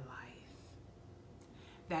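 A woman's voice finishes a sentence, then a pause of faint room tone with a low steady hum, and her voice starts again near the end.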